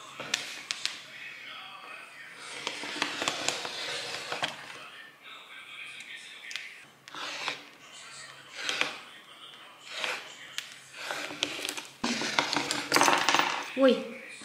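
Rotary cutter blade rolling through fabric along the edge of a cutting template in a series of strokes, the longest and loudest near the end.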